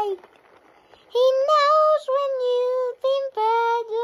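A child singing alone, without accompaniment, in long held notes in short phrases. The singing starts about a second in, after a short pause.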